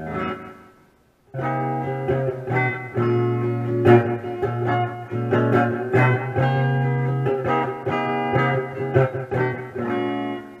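Telecaster-style electric guitar played through an amplifier: a chord rings and fades, then about a second in the playing resumes as a run of picked chords and single-note licks over a held low note.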